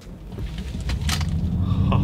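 Ford Mustang Mach-E electric SUV accelerating hard from a standstill, heard from inside the cabin: a low rumble that swells steadily louder and rises in pitch as it pulls away. Its artificial propulsion sound, which is meant to sound like a turbojet taking off, is switched on.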